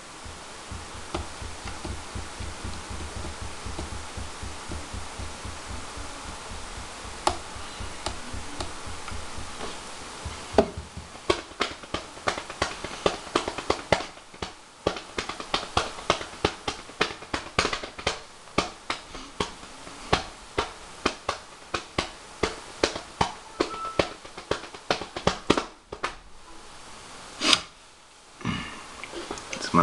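Fingers drumming on a hard surface: a loose rhythm of sharp taps, several a second, starting about ten seconds in and stopping just before the end. Before the drumming there is only a faint low hum.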